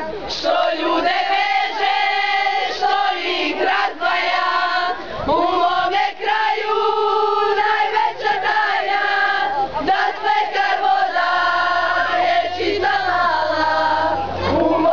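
A group of young people, girls and boys together, singing loudly in unison, holding each note for about a second.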